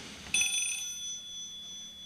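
A single metallic ring: something metal struck once, a few clear high tones that fade away over about two seconds.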